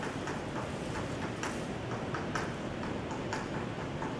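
Chalk tapping on a blackboard: a quick, irregular run of short clicks, about three a second, as small dots are marked on the board, over a steady hiss.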